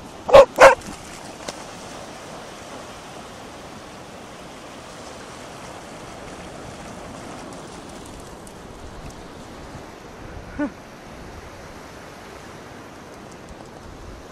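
A Cardigan Welsh Corgi barking twice in quick succession, then a single short yip about ten seconds later, over steady surf and wind.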